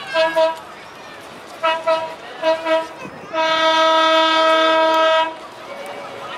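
Horn of a trackless road train sounding a series of short paired toots, then one long steady blast of about two seconds.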